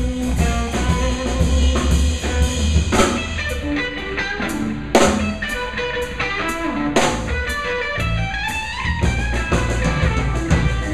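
Live instrumental rock trio: an electric guitar plays a melodic lead line of single notes over bass guitar and a drum kit. Cymbal crashes land about three, five and seven seconds in, the one at five the loudest.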